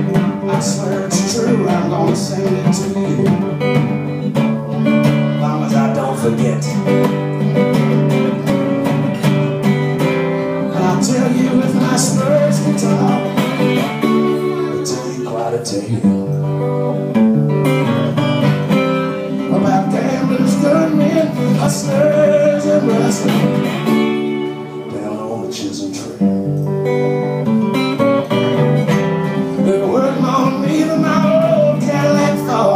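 Acoustic guitar strummed and picked in a steady, rhythmic blues accompaniment, played live. It dips briefly in loudness about three-quarters of the way through.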